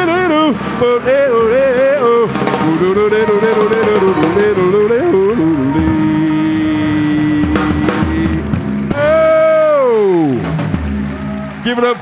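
A jazz combo of piano and upright bass playing under a male voice singing wordless, wavering phrases into a microphone. The voice holds one long note, then slides down in a long glide near the end.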